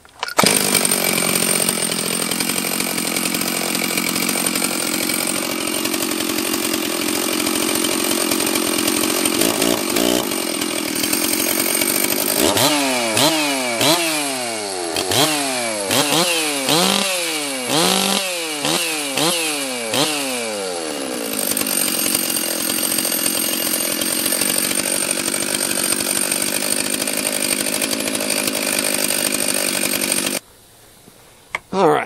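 Stihl 036 (MS 360) two-stroke chainsaw running steadily. In the middle it is revved in a quick run of about a dozen throttle blips over some eight seconds, then it settles back to a steady run. Its carburettor is set at one turn out on both the high and low screws.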